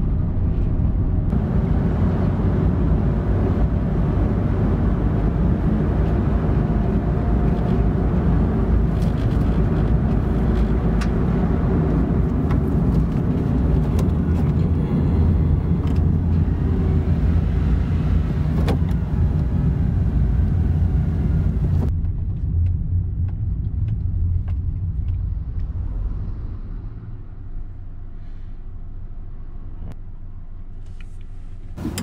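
Engine and road noise inside the cab of a Honda N-VAN six-speed manual, with its 660 cc three-cylinder engine running steadily as the van is driven. The sound drops off about two-thirds of the way through and is quieter near the end.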